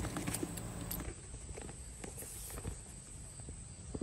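Faint rustling and small clicks of a studded leather handlebar bag being handled: its strap is pulled free of the buckle and the flap lifted open.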